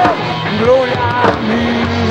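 Rock band playing a song: dense drums and guitars under held melody notes, one sliding in pitch and another held low near the end.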